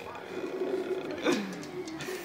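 A dog making low, pitched grumbling vocalizations while being rubbed dry with a towel after a bath. About a second in, one louder call drops in pitch.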